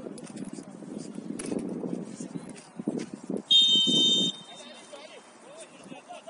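A referee's whistle blown once, a single high tone lasting just under a second, to signal the kickoff. Players' shouts and voices sound around it.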